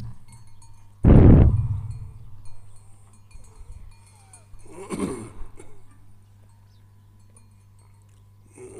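A loud thump on a handheld PA microphone about a second in, dying away within a second, and a shorter, quieter sound about five seconds in, over a steady electrical hum from the sound system.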